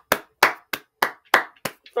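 A person clapping hands, about seven sharp claps evenly spaced at roughly three a second.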